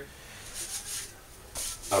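Faint rubbing and scraping, in two short spells, as a plastic seal tool pushes a new shaft seal into the spa pump's seal housing.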